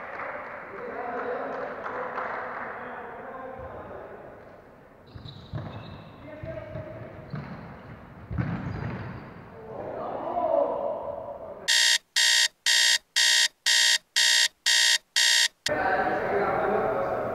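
A murmur of voices in a large room, then a loud run of short electronic beeps, about two a second for some four seconds, with dead silence between the beeps.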